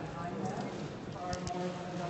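A person speaking, with two short, sharp clicks about a second and a half in.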